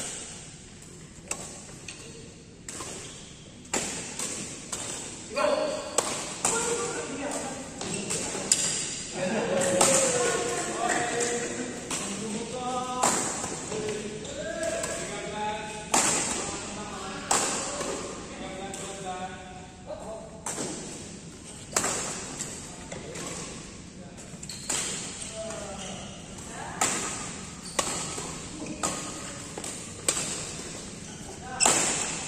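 Badminton rackets striking a shuttlecock again and again during doubles rallies: sharp, irregularly spaced hits, some louder than others.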